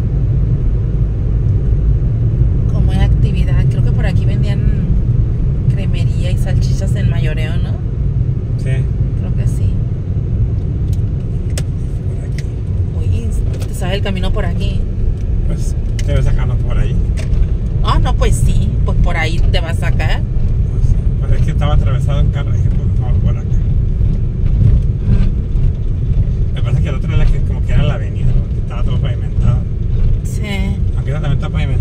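Car cabin noise while driving: a steady low rumble of engine and road. Voices talk quietly at times over it.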